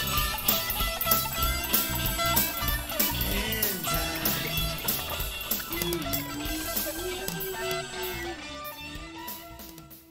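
Closing bars of a blues-rock song: electric guitar playing gliding lead notes over a steady drum beat, fading out toward the end.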